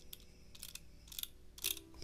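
Computer mouse scroll wheel clicking faintly in a few short runs over a low steady hum.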